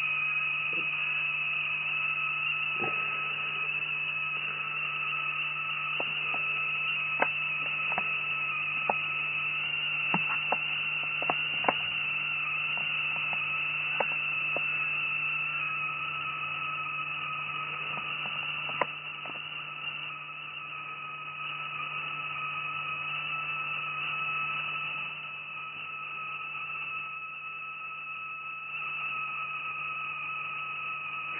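Homemade high-voltage spark-gap oscillator giving a steady high-pitched whine over a low electrical hum, with scattered sharp snaps from its spark gap, most of them in the first half. The whine and hum ease a little about two thirds of the way through.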